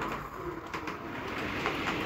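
Mehano H0-scale model of a DB class 218 diesel locomotive running along the track: the steady hum of its small motor and wheels, with a few light clicks.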